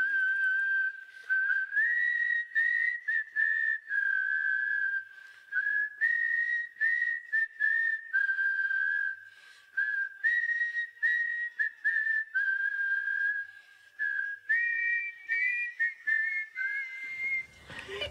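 Multitracked human whistling from a recording session played back on its own: a melody in short phrases. Near the end a second whistled line adds a harmony above it, a little pitchy and out of key.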